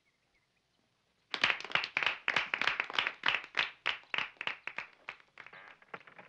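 A small group of people clapping. It starts suddenly about a second in, as fast irregular claps, and thins out near the end.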